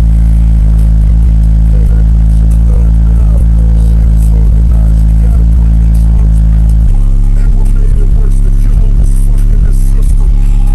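Car subwoofer on a 500-watt RMS amplifier playing bass-heavy music at very high volume, so loud the recording is clipped. A deep bass note is held for about the first seven seconds, then the bass breaks into a choppier pattern.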